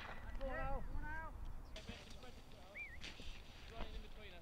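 A distant man's voice calling "Over!", drawn out twice in the first second and a half: the shoot call that warns the guns a bird is flying over them. A short rising-and-falling whistle follows near the middle, along with a few faint clicks.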